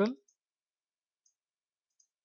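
A few faint computer mouse clicks, about a second apart, against near silence. The last syllable of a spoken word is heard at the very start.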